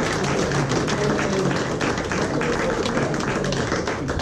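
Audience applauding: a steady, dense clatter of many hands clapping, with a murmur of voices underneath.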